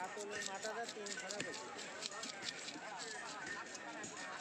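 Chatter of a busy fish market with a rapid run of sharp knocks and clicks as a fish is scaled and cut against an upright boti blade.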